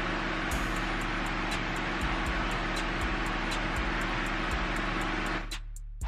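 Steady background hum and hiss of machine-like room noise, with faint regular ticks about four a second. The hiss cuts off about five and a half seconds in as music with a beat takes over.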